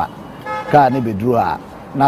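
A man speaking, with a short car-horn toot about half a second in.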